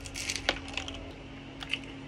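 Biting into and chewing a doner kebab wrap close to the microphone: a brief crunch at the start, a sharp click about half a second in, and a few small clicks near the end.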